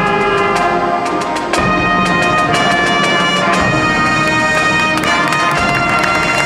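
Marching band playing: brass and winds hold sustained chords over drumline hits, with a change of chord about one and a half seconds in.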